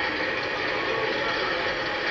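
Armoured vehicle engine running, a steady even noise from archival film footage, played back through cinema speakers.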